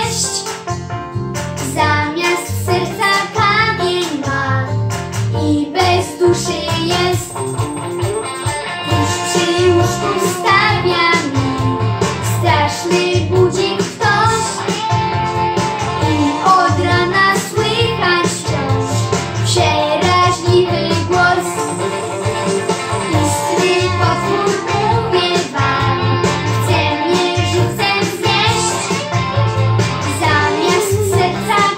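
A young boy singing a song over instrumental musical accompaniment.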